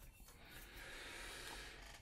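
Near silence with a faint, steady rustling from about half a second in, as of clothing and a body shifting in a chair.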